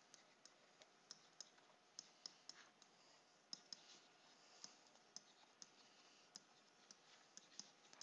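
Faint, irregular light clicks, about two or three a second, of a stylus tapping a tablet screen as words are handwritten.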